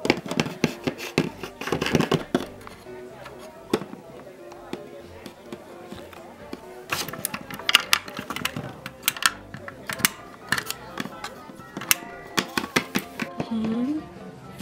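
Background music under a run of sharp clicks and taps of plastic toy figures being handled and set down on a tabletop. The taps come in two clusters, one at the start and one from about halfway to near the end, with a quieter stretch of music between.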